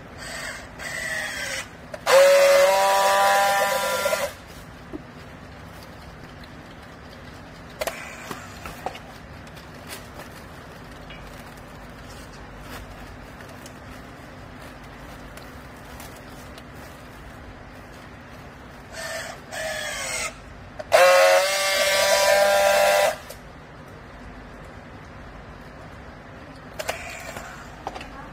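Battery-powered handheld strapping tool working twice on a plastic bale strap. Each time a short motor whine falls in pitch as the strap is pulled tight, then comes about two seconds of loud, steady buzzing as the tool welds the seal. A low steady hum runs underneath.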